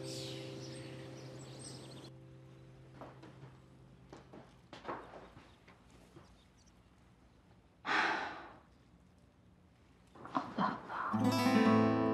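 Drama underscore: a held chord fades out over the first two seconds, leaving near quiet. About eight seconds in comes one short, breathy sigh, and acoustic guitar music begins near the end.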